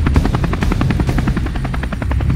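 Helicopter rotor blades chopping rapidly, about a dozen beats a second, over a low steady rumble.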